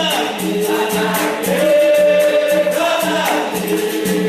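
Capoeira song in São Bento rhythm: a group sings in chorus, holding one long note in the middle, over a steady beat of berimbau and pandeiro.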